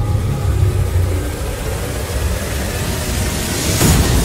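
A deep, steady rumbling drone of film soundtrack sound design that swells near the end into a sharp hit.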